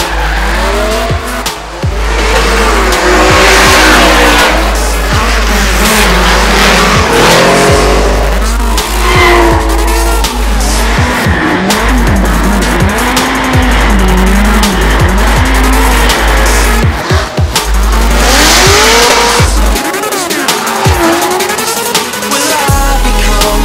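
Drift cars' engines revving hard, their pitch rising and falling in quick sweeps as the cars slide, with tyres squealing on the asphalt. A deep music bass line runs underneath and drops out near the end.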